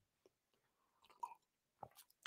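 Near silence, with a few faint mouth clicks.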